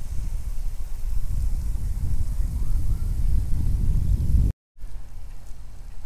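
Wind buffeting the microphone outdoors: an irregular low rumble with a faint hiss above it. It drops out for a moment about four and a half seconds in, then carries on more quietly.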